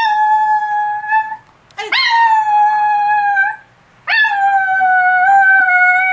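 Small dog howling: three long howls, each swooping up at the start and then held on a steady pitch, with short breaths between them.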